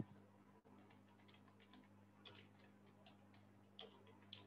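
Near silence: faint, irregularly spaced soft clicks over a low steady electrical hum, with a brief louder noise at the very start.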